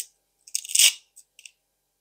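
Hook-and-loop (velcro) adhesive strip being peeled apart by hand: one short ripping sound about half a second in, followed by a couple of faint clicks.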